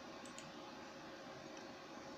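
Computer mouse clicking, two faint clicks close together about a quarter second in, over low room hiss with a faint steady hum.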